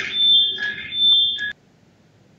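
A high-pitched steady electronic tone that swells and fades over a fainter background, cutting off suddenly about one and a half seconds in.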